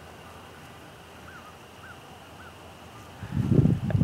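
Quiet outdoor background with three faint, short rise-and-fall bird calls about half a second apart, followed near the end by a louder low rumbling noise on the microphone.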